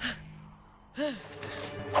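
A girl's sharp gasp of alarm, followed about a second in by a short cry of "No!" with a rising and falling pitch.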